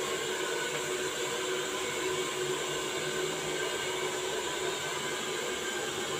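Handheld hair dryer running steadily, a continuous rush of air with a faint steady motor whine, as it is played over short hair.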